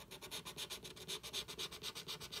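Scratch-off lottery ticket being scratched, the coating rubbed away in quick, even back-and-forth strokes at about five a second.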